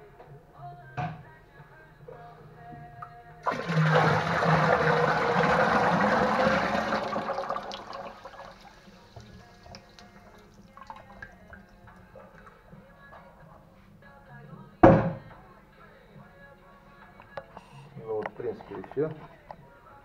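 Fermented rice wash poured in a gush from a plastic barrel into a stainless-steel still pot: the rush of liquid starts suddenly about three and a half seconds in and tapers off over the next few seconds. A single sharp knock comes about fifteen seconds in.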